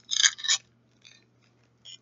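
Thin plastic wrapper crinkling as a Mini Brands miniature is unwrapped from its small clear bag: two quick rustles just after the start, then only faint handling rustles.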